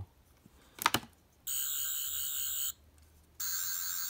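Twelfth Doctor sonic screwdriver toy's sound effect: a click as its switch is pushed about a second in, then a high, warbling electronic buzz for just over a second, a short break, and the buzz starting again near the end as the blue light comes on.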